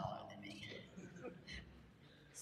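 Faint, quiet speech, too low to make out words, fading off.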